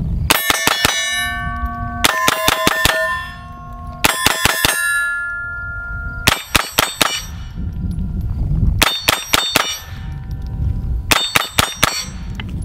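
A .22 LR Smith & Wesson M&P 15-22 pistol firing six quick strings of several shots each at steel targets. Each string sets the steel plates ringing with clear, fading tones.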